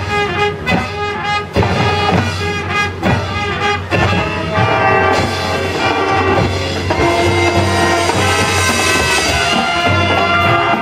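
Marching band brass and percussion playing a jazz arrangement: short, accented hits for the first few seconds, then long held brass chords from about five seconds in.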